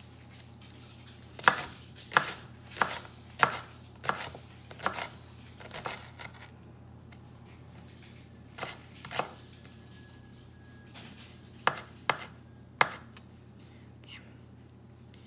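Chef's knife chopping an onion on a wooden cutting board: sharp knocks of the blade striking the board, about one every two-thirds of a second for several strokes, then a pause, two more chops, and three more near the end.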